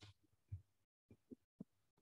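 Near silence, broken by a few faint short strokes of a marker writing on a whiteboard.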